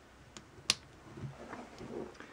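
A sharp click about two-thirds of a second in, with a fainter click just before it and faint handling sounds after: the actuator's encoder cable connector being plugged back in.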